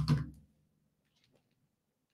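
The end of a spoken word, then near silence with a few very faint ticks.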